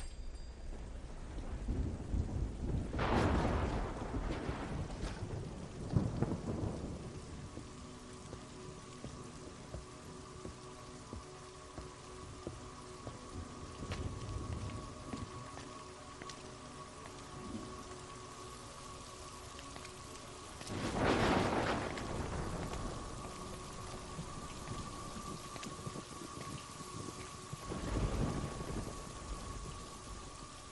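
Steady rain falling, with deep rolls of thunder swelling up about three, six, twenty-one and twenty-eight seconds in; the ones at three and twenty-one seconds are the loudest. A faint steady hum runs underneath from about eight seconds in.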